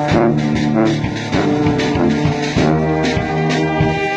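Brass band of sousaphone, trombones and trumpets playing a tune together with a steady beat.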